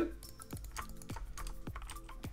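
Irregular clicking of computer input, about six clicks a second, with faint background music underneath.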